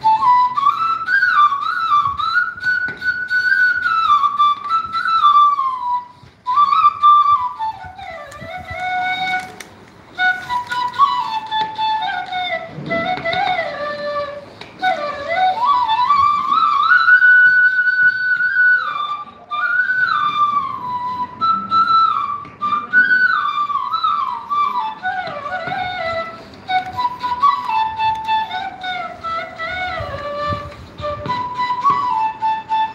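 A flute playing a slow solo melody that moves up and down in small steps, with a few long held notes and two brief pauses in the first ten seconds.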